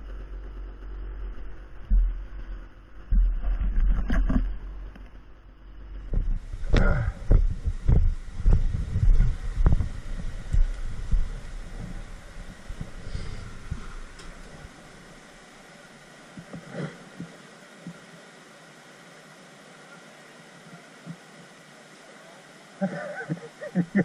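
A run of loud knocks and thumps close to the microphone. These are followed by a steady, quieter rush of a shallow rocky creek flowing.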